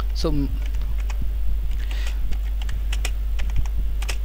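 Typing on a computer keyboard: a run of irregular key clicks as a short phrase is typed, over a steady low hum.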